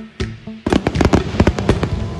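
Aerial fireworks going off: a rapid string of bangs and crackles starting about two-thirds of a second in, over background music with a steady beat.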